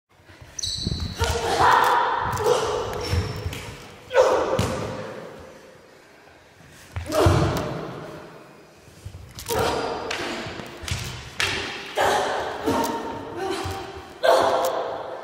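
Plastic training swords knocking together in a sparring exchange, mixed with the fighters' shouted grunts of effort. The strikes come several seconds apart at first, then quicken near the end, each ringing on in a large, bare, echoing room.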